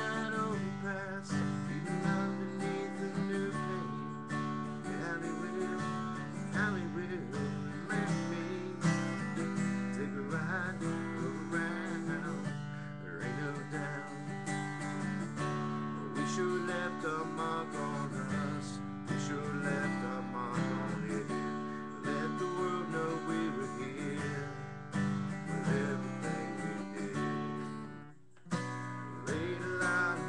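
Acoustic guitar strummed in steady chords, with a short break about two seconds before the end.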